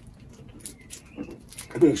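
A candy bar wrapper being unwrapped by hand: quiet crinkles and small ticks, with a faint brief high squeak a little past a second in. A man's voice starts near the end.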